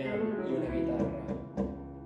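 Live tango chamber ensemble of violin, accordion, piano, double bass and electric guitar playing an instrumental passage. It has a short accent about one and a half seconds in, then thins and drops in loudness.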